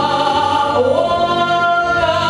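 Singing with music: a song about the Volga land, voices holding long notes, with one note sliding upward about a second in.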